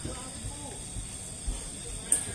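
Faint voices in the background over a steady high-pitched hiss, with a few low thuds about one and a half seconds in.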